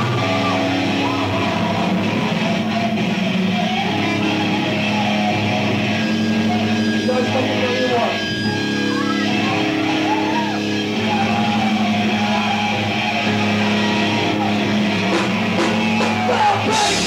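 Live heavy rock band playing: electric guitar and bass holding long, loud chords, with wavering higher lines over them.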